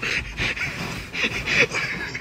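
A person breathing hard in a series of short, noisy puffs, several a second.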